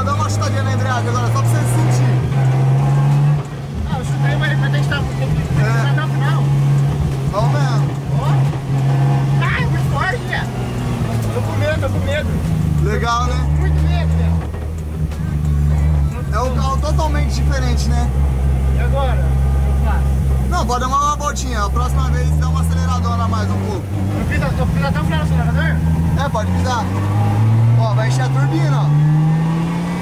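Turbocharged Toyota 1JZ straight-six in a drift car, heard from inside the cabin, pulling at low speed with its revs rising and falling several times as the car is driven and shifted.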